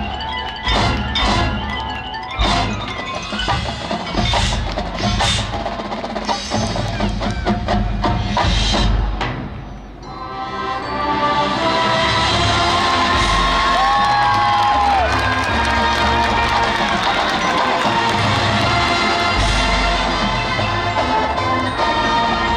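A high school marching band playing its field show. For about the first ten seconds there are sharp, accented percussion hits mixed with mallet-keyboard figures. After a brief dip, the full band comes in with loud sustained chords that are held to the end.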